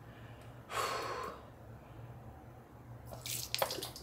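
Saline nasal rinse from a squeeze bottle: a short rush of liquid and breath about a second in, then liquid dripping and splashing into the sink near the end.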